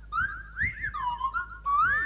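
Clangers' whistled voices: a quick back-and-forth of swooping whistle phrases that rise and fall in pitch like speech.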